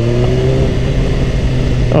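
BMW S1000RR inline-four engine pulling gently through a gear, its pitch rising slowly and steadily, with wind rush over the helmet microphone.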